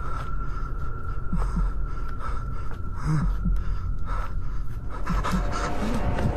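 A man panting hard while running, with quick, irregular scuffs and knocks of footsteps and handling. A thin steady high tone runs underneath.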